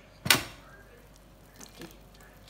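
Lid of a Philips electric pressure cooker twisted free and lifted open, its pressure already vented: one sharp plastic clunk about a quarter second in.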